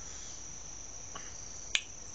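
A steady high-pitched background whine or chirring, with a faint click about a second in and a sharper click near the end.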